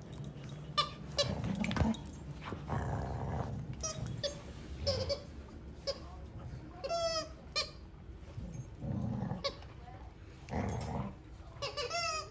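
Dalmatians play-fighting on a sofa: repeated high-pitched whines and yelps, with one clear drawn-out whine about seven seconds in, and low grumbling sounds between them. Cushion rustling and small knocks come from the scuffle.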